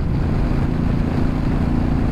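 Motorcycle engine running at a steady road speed, a constant drone mixed with wind and road noise.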